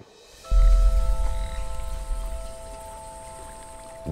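Night-time film ambience of croaking frogs. A deep low rumble starts about half a second in and settles to a steady hum, with several steady high tones held above it.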